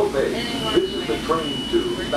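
People talking inside a commuter train car over a low steady rumble, with a thin steady high-pitched tone coming in about half a second in.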